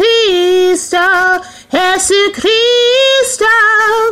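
A woman singing solo and unaccompanied, holding long notes with a wavering vibrato and pausing briefly for breath between phrases.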